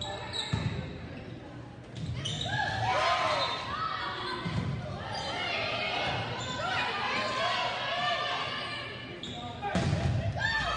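Volleyball being hit during a rally in a gymnasium: a handful of sharp thumps of the ball, with many overlapping voices of players and spectators shouting and cheering from about two seconds in, echoing in the hall.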